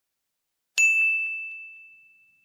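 A single bright bell-like ding, a chime sound effect marking the change to the next slide. It strikes about three-quarters of a second in and rings out, fading slowly over more than a second.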